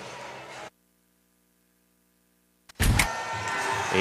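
Basketball game noise in a gym drops out for about two seconds, leaving only a faint steady hum, then comes back with a heavy low thump and the court noise resumes.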